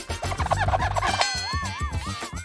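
A girl giggling in quick bursts over upbeat background music, followed in the second half by a wavering, drawn-out tone.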